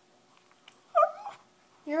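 A small dog whining once, briefly and high-pitched, about a second in: the dog is unhappy at being kept in its bath.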